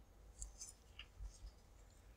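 Near silence: room tone with a few faint, short clicks spread through it.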